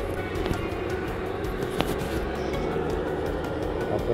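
Steady noise of a gas torch flame heating a beaker, under background music.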